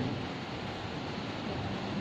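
Steady, even background hiss of room noise with no distinct events.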